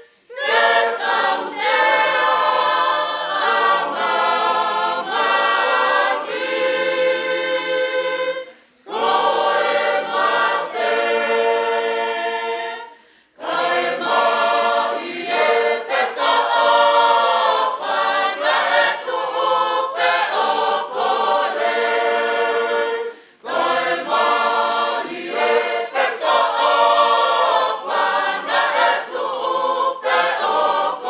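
Church congregation singing a hymn unaccompanied in several voice parts, in long held phrases with short breaths between them about 9, 13 and 23 seconds in.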